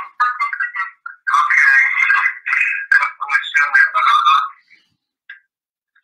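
A short tune like a phone ringtone, thin-sounding as if carried over a phone line, playing for about four and a half seconds and then stopping.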